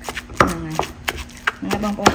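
Pestle pounding pieces of fresh fish in a wooden mortar: repeated dull knocks, about three a second.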